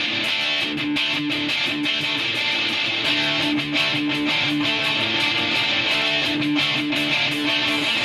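Live punk band playing an electric guitar riff that repeats over and over at a steady level, as a song's intro.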